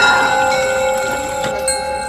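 A bell-like metallic sting struck at the very start, several ringing tones holding and slowly fading, with new higher chiming tones entering near the end: an eerie dramatic sound effect.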